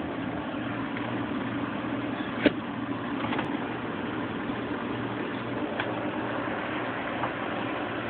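A steady low mechanical hum, like a motor or engine running, with a single short click about two and a half seconds in.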